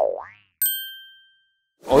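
Cartoon-style editing sound effects: a springy boing whose pitch dips and then rises, followed about half a second later by a single bright ding that rings briefly and fades.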